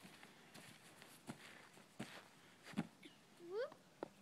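A child's footfalls and body thudding on grass as she runs and tumbles, a few separate soft thuds, followed near the end by a short rising exclamation from a person.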